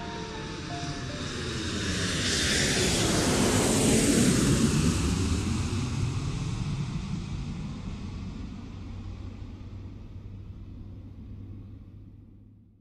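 An airplane flying past: its noise swells to a peak about four seconds in, falls in pitch as it passes, then slowly fades away.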